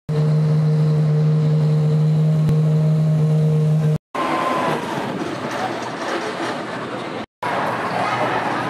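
A race car engine holding a steady low hum for about four seconds, then cut off suddenly. It gives way to a few seconds of busy garage noise with no clear tone, broken by brief dropouts where the clips are spliced.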